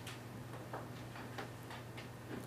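Faint, irregular light ticks, a handful over two seconds, over a steady low electrical hum.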